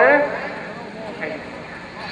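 A man's voice over a microphone finishing a sentence, then a lull filled with faint background voices and outdoor track noise.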